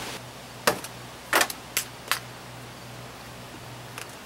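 Plastic friction clips of a Toyota Land Cruiser rear door trim panel popping loose as the panel is pried away from the door: four sharp pops in quick succession starting under a second in, the second a little longer.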